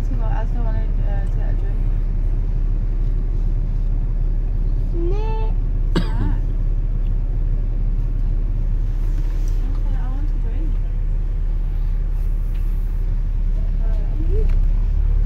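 Steady low rumble of a bus's engine and cabin heard from inside, with indistinct voices now and then and a sharp click about six seconds in.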